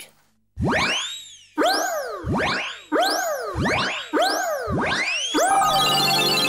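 Cartoon magic-spell sound effect: about eight swooping tones, each rising quickly and falling back, coming faster, then breaking into a shimmering, twinkling music sting as the spell takes effect.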